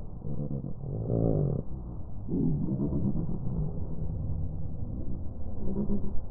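Calls of a flock of black-headed gulls, slowed ten times so they come out pitched far down and stretched into long, deep calls, several in a row, over a steady low rumble.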